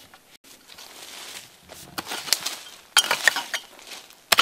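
A hand hoe digging into soil and roots: a few scraping, crunching strokes in the second half, the loudest about three seconds in.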